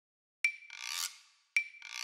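Sound effect for an animated logo intro, heard twice: each time a sharp click with a short high ring, then a brief rasping swish that swells and fades.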